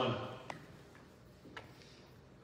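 The end of a man's spoken word, then two faint short clicks about a second apart during a pause at a lectern.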